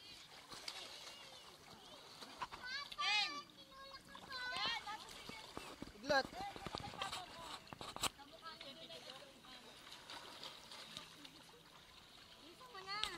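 Swimming-pool water splashing and sloshing around a camera held at the surface, with children's high voices calling out a few times, loudest about three and six seconds in.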